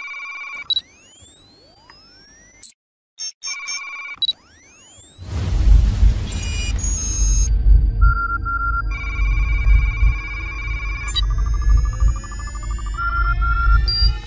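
Synthesized sci-fi sound effects or electronic music: steady beeping tones and sweeping rising whistles. From about five seconds in, a heavy low rumble comes in under more beeps and climbing tones.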